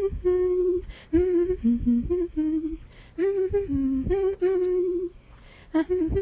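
A voice humming a tune in short phrases of held notes, pausing briefly about every two seconds.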